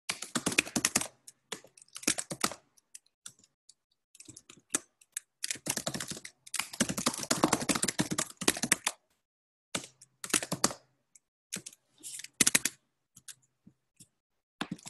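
Computer keyboard typing heard over a video-call microphone: several rapid bursts of key clicks, the longest about three seconds, each cutting off abruptly into silence.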